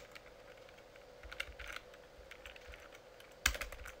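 Computer keyboard typing: scattered soft keystrokes, with a sharper key press about three and a half seconds in.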